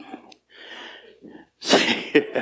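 A man laughing into a close microphone: a sudden loud, breathy burst of laughter near the end, after a few quiet breaths.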